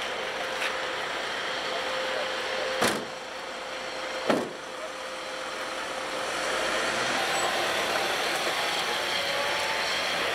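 Two heavy door slams on a Ford Transit van, about three and four seconds in, over a running engine; from about six and a half seconds the van moves off, its engine note rising.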